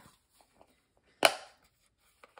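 A single sharp plastic click about a second into an otherwise quiet stretch, from handling the hard plastic case of a Stampin' Up Classic Stampin' Pad ink pad, with a few faint ticks before it.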